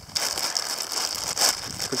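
Plastic zip-top bag crinkling and rustling as it is handled, a dense run of small crackles.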